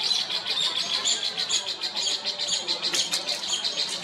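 A bird's rapid rattling call: a fast, even run of short high notes, about ten a second.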